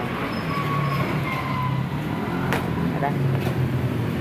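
A vehicle engine running with a steady low hum, with a sharp click about two and a half seconds in.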